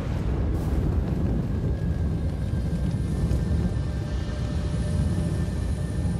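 Steady deep rumble from a dramatized nuclear reactor explosion and its blast, carrying on just after the boom. Faint held tones of a film score come in about two seconds in.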